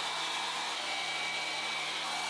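Handheld hairdryer blowing steadily on wet paint on a canvas: an even rush of air with a faint high whine.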